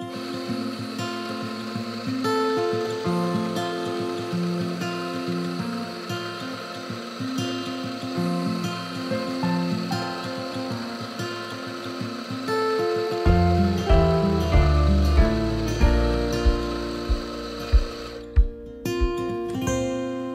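Background music with an electric espresso grinder running under it, grinding a double dose into a two-spout portafilter. The grinder's steady whine stops near the end, and a heavier low beat joins the music about two thirds of the way through.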